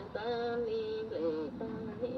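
A song playing: a singing voice holds long notes, with short bends between them, over musical accompaniment.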